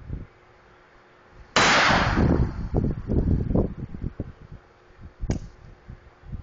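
A single loud handgun shot about a second and a half in, its report echoing and fading over the next couple of seconds. A smaller sharp report or click follows near the end.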